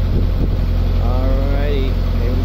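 A narrowboat's inboard engine running steadily at cruising speed, a low even hum.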